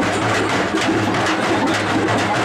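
Rapid, steady percussion, drums struck in quick succession over a dense, noisy din.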